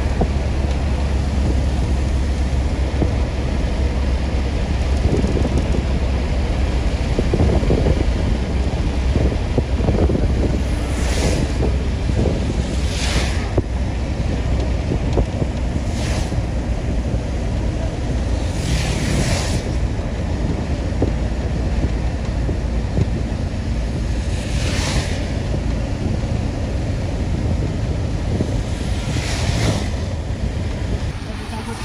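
Steady wind buffeting and road rumble heard from a moving vehicle, with several short hissing swishes of traffic passing on a wet road.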